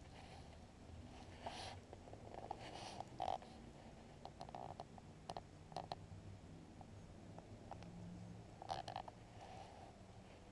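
Faint scattered clicks and rustles from handling a light fishing rod and spinning reel, over a quiet background hum. Short clicks come at irregular intervals, a few of them sharper, about three, five and nine seconds in.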